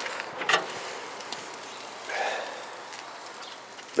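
Steel lid of a Char-Griller barrel smoker being lifted open by its handle: a sharp metal click about half a second in, then a softer, brief noise around two seconds in, over a steady outdoor background.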